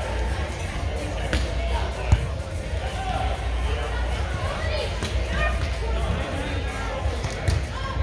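Large-hall ambience with a steady low hum, background music and distant voices, and a sharp slap of a hand hitting a volleyball about two seconds in, with a smaller hit near the end.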